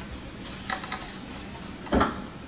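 Steady hiss of a small-room recording, with a few soft rustling bursts about half a second in and a louder short noise at the very end.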